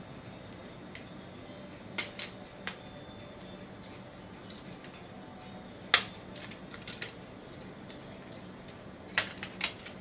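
Sharp clicks and taps of a plastic wire egg slicer being handled as a hard-boiled egg is set in it and sliced: scattered single clicks, one louder click about six seconds in, and a quick run of clicks near the end.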